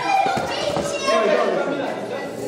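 Children's voices, several kids chattering and calling out over one another.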